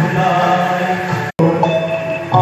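A man's singing voice through a microphone and PA, holding long chant-like notes, cutting out for an instant a little over a second in.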